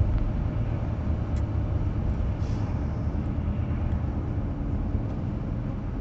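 Steady low rumble of a car in motion heard from inside the cabin: engine and road noise with a faint hiss above it.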